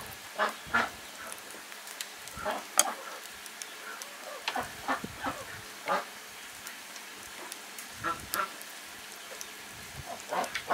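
Farm poultry calling in short, scattered honks and clucks several times, with a few sharp clicks and soft rustling from chopsticks and cabbage leaves being handled.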